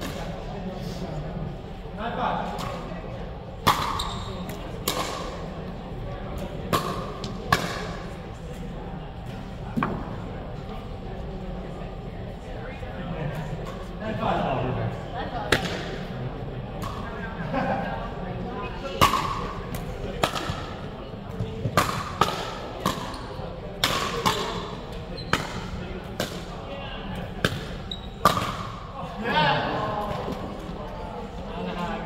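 Pickleball paddles striking a plastic ball in a rally: sharp pops at irregular intervals, a dozen or more, echoing in a gymnasium, with voices in the background.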